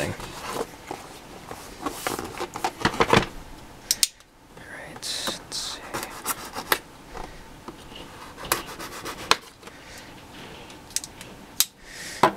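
Knife blade cutting open a cardboard box: irregular scraping and rasping as the blade works through the seal, mixed with clicks and taps of the cardboard being handled.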